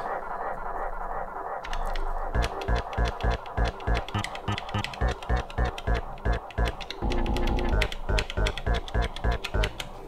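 Elektron Digitakt sampler playing a recorded sample pitched across its pads in chromatic mode, dry with the effect switched off. It starts with a held sound, and after about two seconds it plays a run of short notes, about three a second, each with a low thump.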